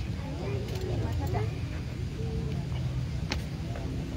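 A steady low mechanical hum, with the faint voices of a crowd talking over it.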